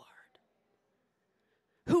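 A woman's voice on a microphone trails off, then near silence for about a second and a half, with her speech starting again just before the end.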